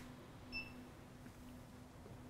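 Near silence with a faint hum, broken by one short, faint electronic beep about half a second in.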